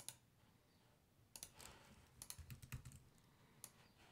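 Faint, scattered clicks of a computer mouse and keyboard: a couple at the start, a cluster through the middle, and one more near the end, with near silence between.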